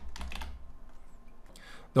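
Computer keyboard keys clicking as a word is typed, a quick run of keystrokes in the first half-second.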